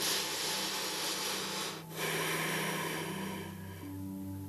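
A woman's long, audible breaths, two in a row: the first lasts nearly two seconds, and after a brief pause the second fades away.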